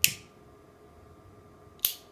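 A metal flip-top lighter clicking twice: a sharp click at the start as it is lit, and another just before the end as the lid snaps shut and puts out the flame.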